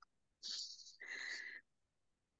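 A person's faint breathing: two short breathy hisses, about half a second and a second in, the first higher and hissier than the second.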